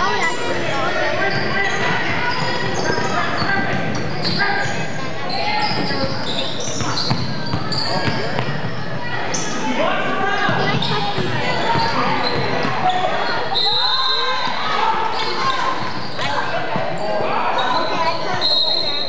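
Basketball game on a hardwood gym court: a ball bouncing as it is dribbled, over a steady mix of players' and spectators' voices calling out, echoing in the large hall.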